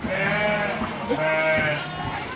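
Sheep bleating: two long bleats about a second apart.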